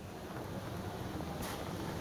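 Faint, steady wind-like hiss of background noise on an open live-feed microphone, with one brief high click about one and a half seconds in.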